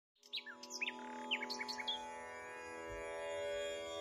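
Birds chirping in quick, short calls over a soft, steady musical drone. The chirps thin out after about two seconds while the drone slowly swells.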